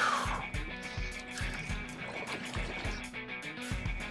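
Background music with steady held tones and a low pulse.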